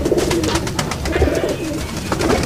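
Sialkoti pigeons cooing in a loft, several soft, warbling coos overlapping, with a few faint clicks.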